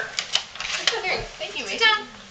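Indistinct voices in a small room, a child's voice among them, with a few short clicks near the start and a brief burst of speech near the end.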